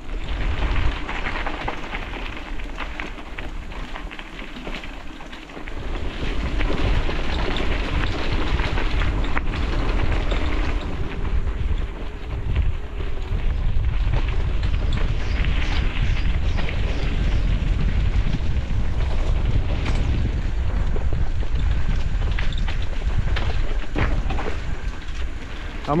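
Wind rumbling on the microphone of a camera on a moving bicycle, mixed with the crunch and rattle of bicycle tyres rolling over a dirt trail. The noise runs steadily, easing briefly about five seconds in.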